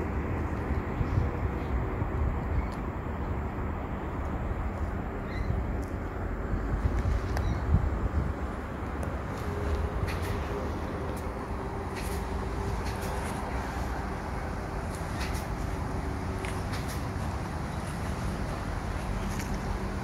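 Steady outdoor background noise with a low rumble and a faint steady hum, with scattered faint small ticks through it.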